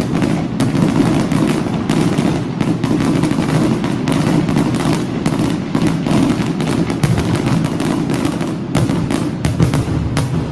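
Fireworks going off: a rapid, irregular string of sharp cracks and pops over a steady low rumble.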